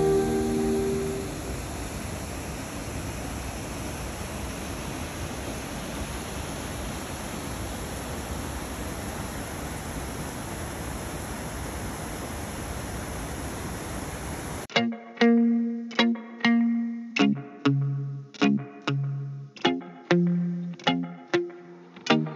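Steady rush of a waterfall cascading over rocks. About fifteen seconds in, it cuts off abruptly and plucked guitar background music takes over, each note ringing and fading.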